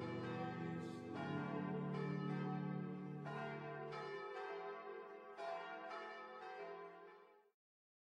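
Closing music of struck, bell-like notes, about one a second, ringing over a low held tone. The low tone stops a little past halfway, and the music fades out and ends shortly before the close.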